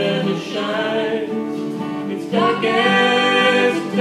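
A man and a woman singing a slow folk song together over strummed acoustic guitars. A new note comes in strongly a little past halfway and is held almost to the end.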